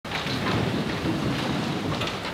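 Low rumbling room noise with faint rustles, and no singing or piano yet.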